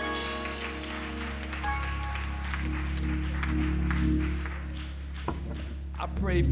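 Church organ and keyboard playing held chords over a steady deep bass, moving to a new chord about a second and a half in.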